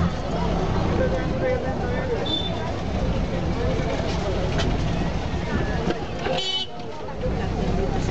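Low, steady engine rumble of a car creeping through a crowded street, heard from inside the car, with the babble of people's voices around it. A brief, high-pitched horn beep sounds about six and a half seconds in.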